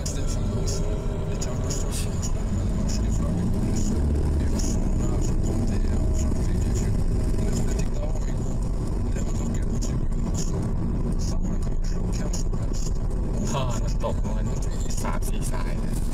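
A car driving along at road speed: a steady, loud low rumble of engine and tyre noise.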